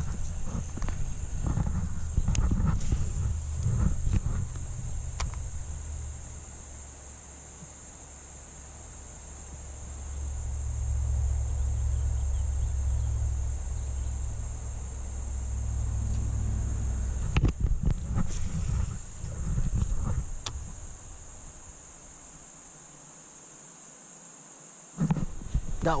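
Steady high-pitched drone of insects, under a low rumble that swells and fades. A few sharp clicks come through as a baitcasting reel is cast and retrieved.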